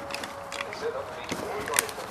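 Plastic screw cap of a motor-oil bottle being twisted loose by a gloved hand, stuck on tight: faint scraping and small clicks, with one sharp click near the end.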